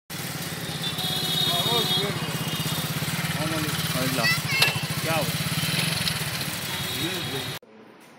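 Street noise: a vehicle engine running steadily close by, with people's voices over it. It cuts off suddenly near the end.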